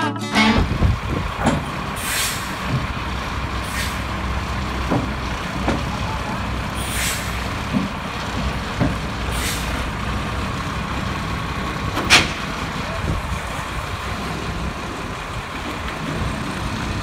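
Heavy truck engine running with a steady low rumble, broken by several short air-brake hisses and one sharp clank about twelve seconds in.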